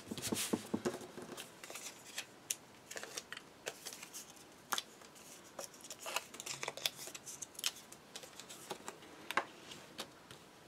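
Hands handling and pressing pieces of cardstock onto a paper album page: scattered rustles, scrapes and light taps, busiest in the first second or so and then sporadic.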